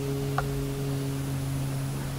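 A Buddhist monk's chanting voice holding one long, steady low note with no change in pitch. There is a short click about half a second in.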